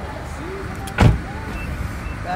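A single loud, sharp thump about a second in, over a steady low rumble.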